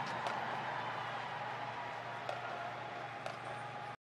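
Large stadium crowd applauding and cheering, slowly fading, until the sound cuts off suddenly near the end.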